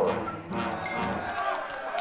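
Contemporary chamber ensemble of strings, winds, brass and percussion playing, with a cluster of falling pitches fading in the first moment. Speech-like voice sounds are layered over the instruments.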